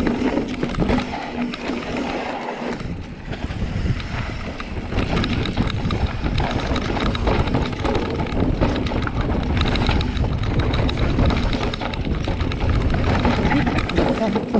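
Mountain bike riding fast down a dirt trail: tyres rolling over dirt and the bike rattling and clattering over bumps, with wind buffeting the microphone.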